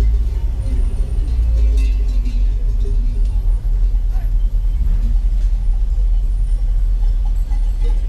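Car engine running at low speed, heard from inside the cabin as a steady low rumble while the car crawls along.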